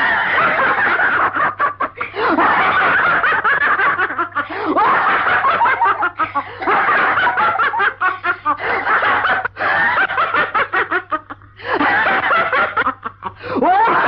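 A man laughing loudly and almost without stopping, in long rapid fits broken by a few short pauses for breath, over a steady low hum.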